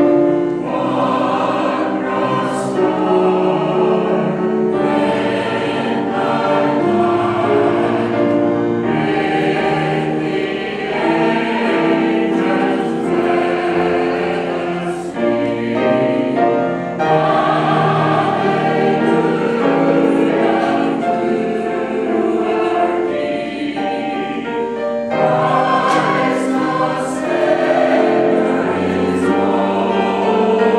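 A mixed choir of older men and women singing a Christmas carol arrangement in full harmony. The phrases are held and broken by short pauses for breath, three times.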